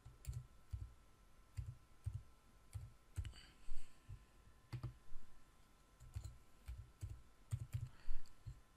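Computer keyboard typing: soft, irregular keystrokes in short runs as a name is typed.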